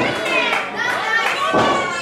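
Spectators shouting from the crowd, children's high-pitched voices prominent, several voices overlapping.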